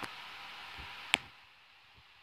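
A faint steady hiss, then a single sharp click a little over a second in, after which the hiss drops away to near quiet.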